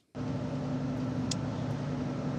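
Steady low hum and rumble, the background noise of a phone-recorded voice message, starting just after a brief cut to silence, with a faint click about a second and a half in.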